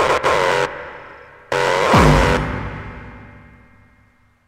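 The ending of a hardcore techno track. The fast beat breaks off shortly after the start, then one last loud hit with a deep, falling kick sound rings out and slowly fades away.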